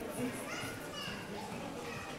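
Background chatter of shoppers' voices in a shopping-centre concourse, including what sounds like a child's voice about half a second in.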